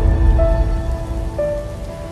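Intro jingle music: held synthesizer notes stepping to a new pitch about half a second in and again near a second and a half, over a heavy low rumble and a rain-like hiss.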